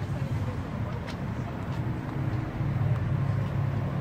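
A steady low engine hum, a little louder about two and a half seconds in, with faint voices.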